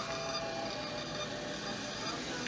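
Thermal printer in a CVS ExtraCare coupon kiosk feeding out a long strip of coupons, a steady even running sound over the store's background hum.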